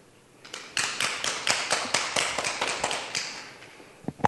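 Audience applauding, beginning about half a second in and fading out before the end.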